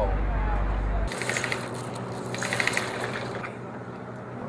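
A steady low hum that cuts off abruptly about a second in, then quieter outdoor ambience with two short bursts of fast clicking rattle.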